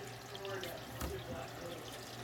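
Faint, steady rush of hot water circulating through the PEX tubing and copper manifold of a radiant floor heating system.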